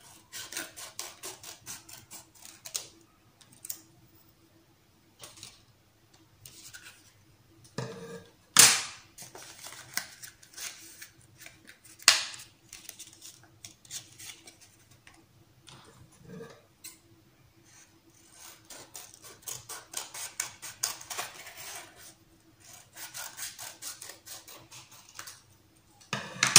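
Scissors snipping through a folded paper plate in runs of quick cuts, with paper rustling between them and two sharp, louder knocks partway through.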